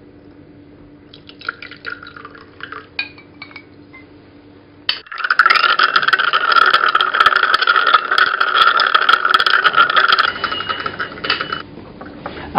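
Liquid poured into a glass beaker with a few light clinks of glass. Then, about five seconds in, a sudden loud, steady fizzing full of fine crackles: a bone fragment dissolving in acid, its mineral giving off gas. The fizzing stops shortly before the end.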